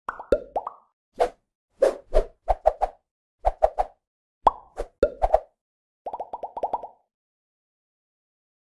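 Animated-intro pop sound effects: a string of short bubbly plops, some singly and some in quick groups of three, a few sliding down in pitch, ending with a fast run of about eight pops at one pitch about six seconds in.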